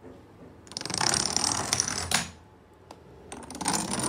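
Wooden Jenga blocks toppling one after another in a domino chain, a rapid clatter of wood knocking on wood. It comes in two runs, one about a second long starting just under a second in, the other starting near the end.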